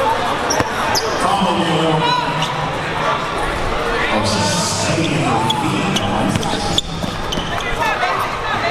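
Basketball being dribbled on a hardwood gym floor, with spectators' voices chattering throughout.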